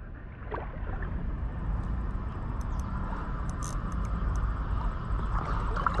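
Ultralight spinning reel being cranked steadily, a continuous whir over a low rumble, as a snakehead that has just struck is reeled in. A few faint clicks come about three seconds in.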